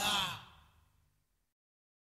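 The last vocal sound of the song, a voice sliding down in pitch and fading out within about a second, ending the track.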